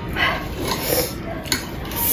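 Eating sounds close to the microphone: noodles being slurped and chewed, with a sharp click of chopsticks or a fork on the plate about one and a half seconds in.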